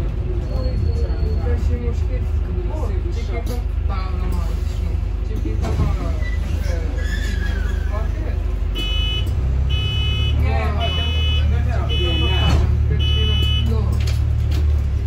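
Interior of a Volvo B5LH hybrid double-decker bus: the engine's low steady rumble, whose note shifts about nine seconds in. Near the end, five high beeps about a second apart, the bus's door warning.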